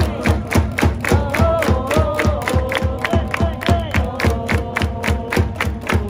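Japanese pro baseball cheering section playing a chance theme: brass melody over a quick, steady drumbeat, with the crowd chanting and clapping along.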